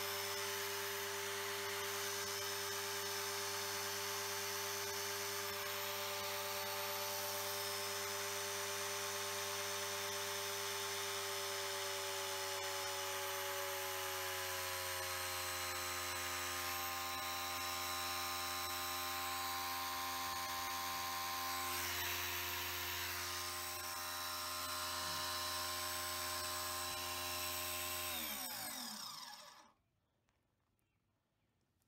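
An electric motor driving a triplex plunger pump (a pressure-washer type pump) runs steadily with a whine, its pitch rising slightly about halfway through. Near the end it is switched off, and the pitch falls quickly as it winds down to a stop.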